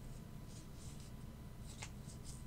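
Faint room tone with a few soft rustles and a small click near the end.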